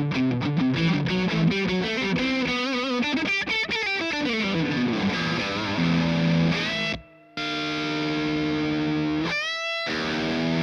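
Charvel Pro-Mod San Dimas electric guitar played with a distorted tone through a Silversmith drive pedal: fast single-note runs, then held ringing chords. The chords are cut off suddenly twice, once about seven seconds in and again just before the end.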